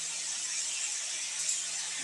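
Steady background hiss with a faint low hum, the noise floor of a desk recording setup between spoken remarks. There is one faint tick about a second and a half in.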